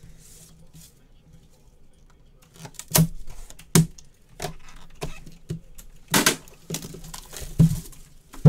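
Trading-card boxes and packaging being handled: a quiet start, then a series of sharp clacks and brief scrapes and tears from about two and a half seconds in.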